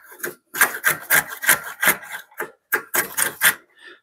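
Wooden shoulder plane taking quick short strokes across pine end grain, a dry scraping rasp about three or four times a second with a brief pause midway. The blade is cutting the soft end grain.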